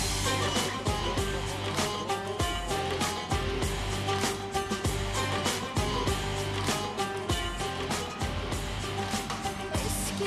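Music with a steady drum beat and a strong bass line.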